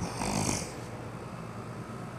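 A short breathy exhale from a person in the first half second or so, then faint steady background hiss.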